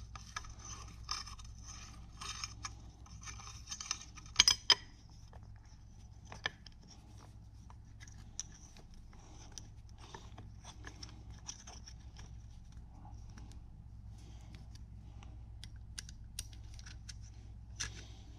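Hex key working the screws that hold the top rail onto a rifle receiver: faint metal scraping and ticking, with a couple of sharp metal clicks about four and a half seconds in.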